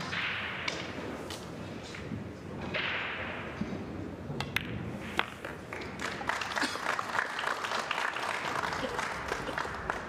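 Short bursts of audience applause, then pool balls clicking and knocking as they are taken out of the pockets and rolled back up the table.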